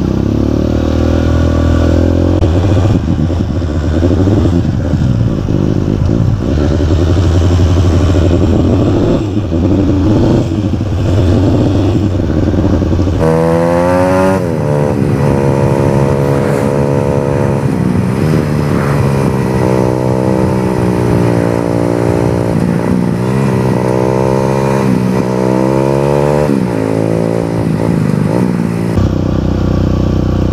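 Trail motorcycle engine running while riding, steady and low at first. After about 13 s its pitch rises and then drops back several times as it accelerates and shifts up through the gears.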